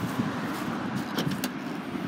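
Steady car noise, with a few light clicks a little over a second in.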